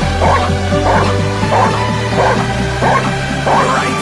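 Belgian Malinois barking repeatedly at a protection helper by the training blind, about two barks a second, the hold-and-bark of protection work, heard under loud dance music.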